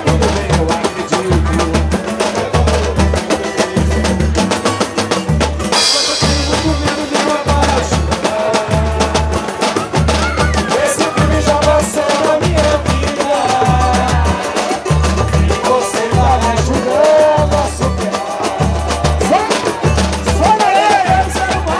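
A live samba group (roda de samba) playing: a steady deep drum beat with hand percussion, strummed guitar and cavaquinho, and a cymbal crash about six seconds in.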